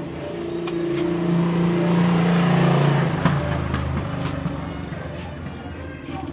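A motor vehicle passing by: its engine grows louder, peaks about halfway through, drops in pitch, and fades away.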